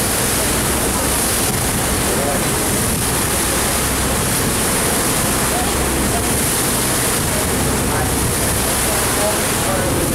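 Churning, rushing water in a motor launch's wake, a loud steady wash, with the boat's engine running steadily underneath.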